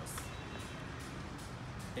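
Steady outdoor construction-site ambience: a low rumble of machinery and vehicle noise with a faint high tone running through it.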